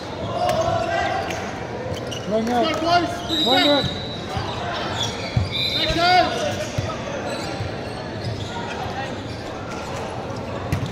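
Echoing sports-hall ambience between volleyball rallies: voices and short shouted calls ring around the hall, with a ball thudding on the hard court floor now and then.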